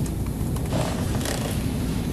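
Faint marker strokes on a whiteboard over steady room hum, with a short scratchy stroke about a second in.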